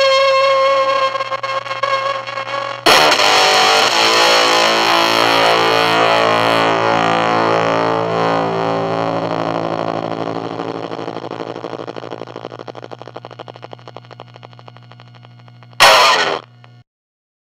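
Electric guitar with high-output pickups played through a germanium Fuzzrite fuzz pedal: a held note breaks up and sputters out, then a loud chord is struck about three seconds in and rings on for many seconds. Its decay boils, then breaks up into a crackling, gated glitching as it dies, which is the pedal's tuned-in gating. A low hum runs underneath, and a short loud burst comes right at the end.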